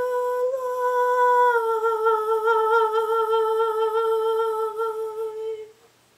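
A woman's voice holds one long wordless final note that dips slightly in pitch after about a second and a half, then wavers with vibrato before cutting off near the end.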